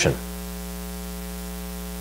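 Steady electrical mains hum, one low tone with a ladder of evenly spaced overtones, holding level throughout. A man's last word trails off in the first moment.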